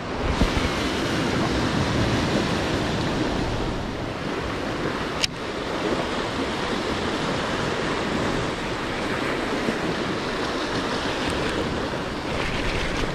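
Sea waves washing against a rocky shore, with wind buffeting the microphone. There is a single sharp click about five seconds in.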